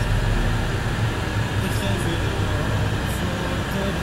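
Steady car cabin noise heard from inside a slowly moving car: a low engine and road hum with an even hiss above it.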